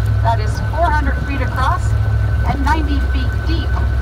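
Tour boat's engine running with a steady low drone, a thin steady high whine over it, while a voice talks in short phrases on top.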